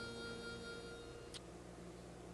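The last held notes of a harmonica dying away. A single faint click comes a little over a second in, over a low steady hum.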